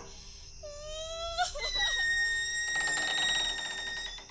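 Sound effect of a door creaking open on its hinges: a squeal that rises in pitch about a second and a half in, then holds a long high note.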